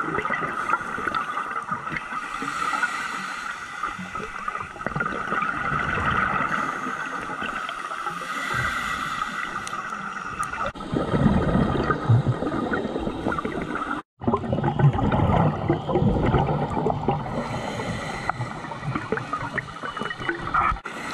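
Underwater sound heard through a dive camera's housing: a scuba diver's exhaled bubbles gurgling in irregular bursts over a steady hum. The bubbling grows louder about halfway through, and the sound drops out for a moment shortly after.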